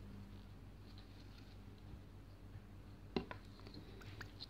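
Faint handling of needle and thread while a knot is tied in needle lace, over a low room hum, with two small clicks a little over three seconds in.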